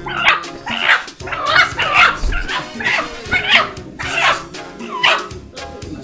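A dog barking and yelping repeatedly, about one to two short cries a second, over background music. The cries stop about five seconds in.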